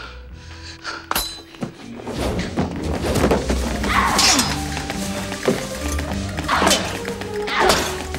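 Film score music under sword-fight sound effects: a sharp hit about a second in, then thuds and loud swishes as the fighters tumble into hay.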